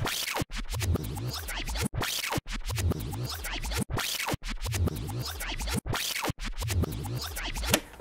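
Fast-forward sound effect: record-scratching over a short electronic beat, looped so that it repeats about every two seconds with sharp cut-outs.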